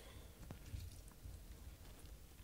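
Faint squishing of a lemon half being squeezed by hand, with a soft click about half a second in.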